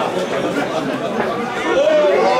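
Several people talking at once close to the microphone, overlapping conversational chatter of spectators.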